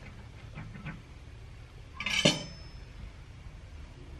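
A kitchen knife set down on a granite countertop about two seconds in: one sharp metallic clink with a brief high ring, after a few faint soft knocks of the blade cutting through dough.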